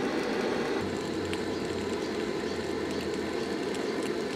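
Small fire burning on the rubber tyres of a metal toy grader: a steady crackling hiss, with a low hum underneath from about one second in until about three seconds in.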